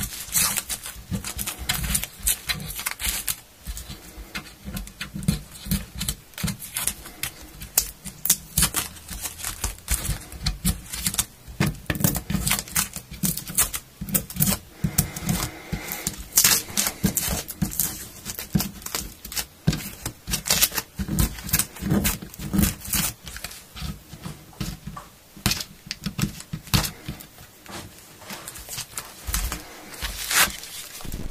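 Frets on a taped-off maple guitar fingerboard being worked by hand: a rapid, irregular run of short scratchy rubbing strokes and small clicks, as in fret polishing.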